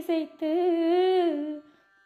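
An unaccompanied woman's voice holds one long sung note with a slight waver and a small drop in pitch near its end. It stops about a second and a half in, leaving a brief pause.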